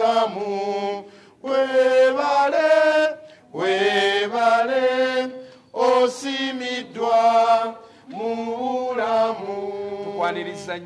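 A voice chanting a melody in long held notes, in about five phrases, each broken off by a short pause.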